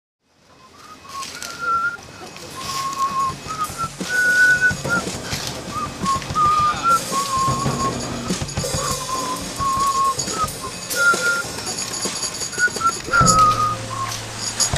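A person whistling a slow melody in held and stepping notes, over scattered clicks and faint high ringing.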